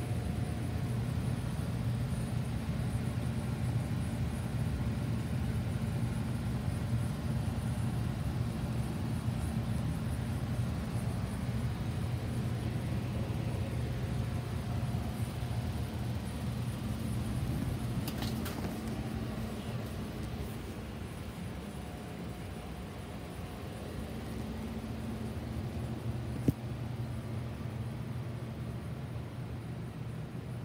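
A steady low machine hum, as from running equipment, with a brief scrape about 18 seconds in and a single sharp click about 26 seconds in.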